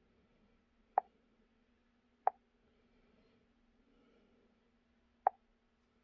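Three short, sharp clicks, about one, two and five seconds in: taps on the Launch X431 PROS Mini scan tool's touchscreen as menu items are selected.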